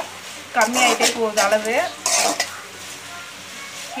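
A metal ladle stirs and scrapes coriander leaves, garlic and tomato frying in an aluminium kadai. A light sizzle runs under it, and the ladle clinks on the pan a couple of times. A woman's voice talks over the first half.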